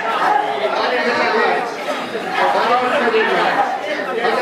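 Several people praying aloud at once, their voices overlapping into a continuous babble with no pause, echoing in a large hall.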